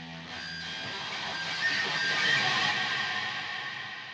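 Sampled electric guitar feedback drenched in reverb, played through a tremolo effect. Held notes swell into a bright wash that is loudest about halfway through, then fade.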